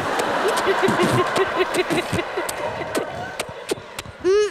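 Studio audience laughing and applauding, with one person's laugh standing out as a quick run of short ha-ha syllables. The noise dies down after about two and a half seconds.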